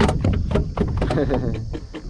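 Handling noises as a caught fish is held in a small boat: a sharp knock at the start, then a run of clicks and taps, over a low rumble of wind on the microphone.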